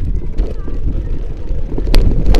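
Rumbling handling and wind noise on a moving action camera's microphone, with scattered knocks and a sharp click near the end.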